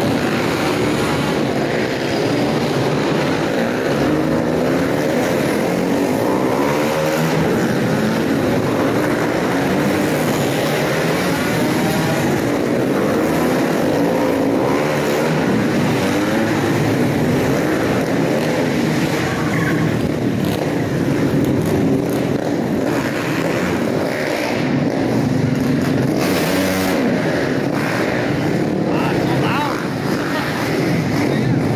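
A pack of dirt-track racing motorcycles lapping a tight indoor flat track, several engines overlapping and revving up and down without a break, inside a large arched hall.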